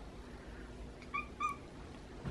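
A domestic cat chirping twice in quick succession, two short high calls about a second in.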